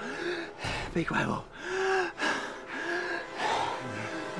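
A person gasping for breath, a run of heavy, ragged breaths with short strained vocal sounds about once a second.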